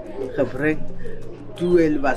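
A woman speaking in isiZulu: speech only.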